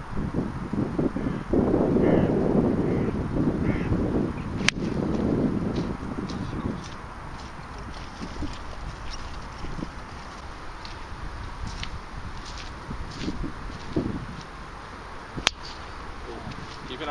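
A golf club striking a teed ball: one sharp crack about five seconds in, over a low gusting rumble of wind on the microphone. Just before the end, a second sharp crack of another club hitting a ball.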